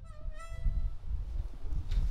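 A single acoustic guitar note plucked, ringing for about half a second and bending slightly up in pitch, over a steady low rumble that is the loudest sound throughout.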